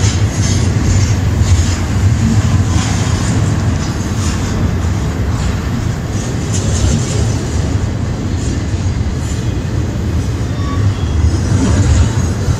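Double-stack intermodal freight train of container well cars rolling past: a steady low rumble of wheels on rail with scattered clicks and rattles from the wheels and cars.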